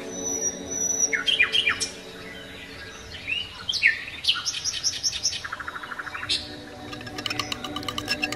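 Birds chirping, with quick falling chirps and short trills. Near the end this gives way to a fast, even clicking of a metal spoon beating raw eggs in a clay bowl.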